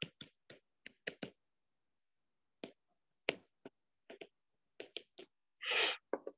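Stylus tip tapping and clicking on a tablet's glass screen during handwriting: a string of irregular sharp taps, some in quick pairs, with a gap of about a second and a half in the middle.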